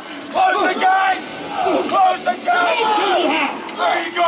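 Several voices shouting and yelling over one another: battle cries from actors in a staged fight.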